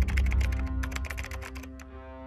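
Fast keyboard-typing clicks, a sound effect that stops near the end, over a low, sustained music bed with held notes.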